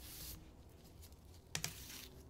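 Faint handling noises from gloved hands working over a metal plate of dried grass: a brief rustle at the start and a couple of light clicks about one and a half seconds in.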